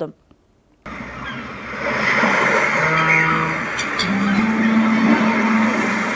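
Steady background bustle of traffic and voices, fading in about a second in after a moment of silence.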